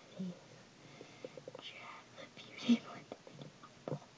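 Quiet, whispered speech with a few faint clicks.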